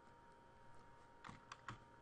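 Near silence broken by a few faint computer clicks about a second and a half in, typical of a mouse button picking a menu item.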